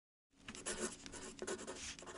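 Pen scratching on paper in quick strokes, a writing sound effect, starting about a third of a second in.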